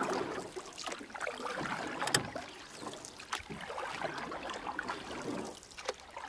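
Water churning and sloshing against a camera housing held under or at the surface of a pool, heard muffled, with a few sharp clicks, the loudest about two seconds in.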